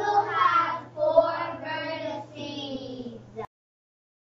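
A young child's voice in drawn-out, sing-song speech, cut off abruptly about three and a half seconds in.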